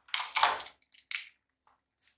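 Handling sounds as a small object is picked up off a wooden tabletop: a quick cluster of light knocks and scrapes in the first second, then one short click a little after a second in.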